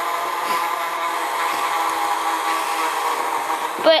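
Small electric motor of an animated hanging ghost Halloween decoration running steadily as it shakes the figure: an even hum made of several steady tones.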